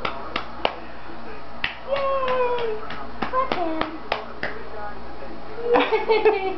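A baby clapping his hands, a skill he has only just learned: about a dozen light, uneven claps, with short vocal sounds in between.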